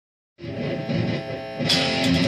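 Electric guitar being played. It starts about half a second in and gets louder with a struck chord near the end.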